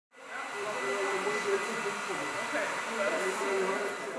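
Steady rushing background noise with a faint murmur of distant voices: the ambience of a room with people talking.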